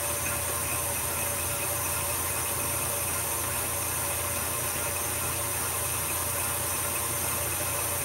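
Electric stand mixer running steadily at a turned-up speed, its paddle beating a thick cream cheese, butter and powdered sugar filling in a steel bowl until it stiffens.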